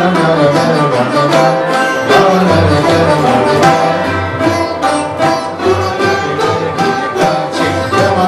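Sarod playing a quick run of plucked notes with tabla accompaniment, the deep strokes of the bass drum sounding underneath.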